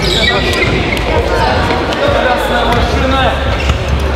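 Children's voices talking and calling out over one another, with scattered sharp knocks among them.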